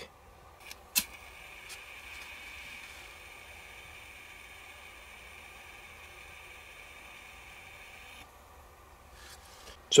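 A sharp click about a second in, then a faint steady hiss for about seven seconds that cuts off near the end, as a small flame is held to the oil-soaked pith wick of an orange-peel oil lamp to light it.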